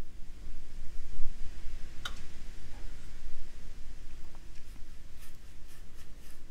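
A watercolor brush stroking wet paint on textured watercolor paper, over a steady low hum, with one sharp click about two seconds in.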